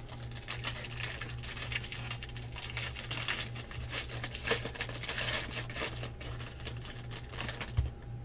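Foil wrapper of a 2016 Bowman Draft jumbo trading-card pack being torn open and crinkled by hand: a continuous run of crackling rustles and sharp little clicks as the wrapper is peeled back from the cards.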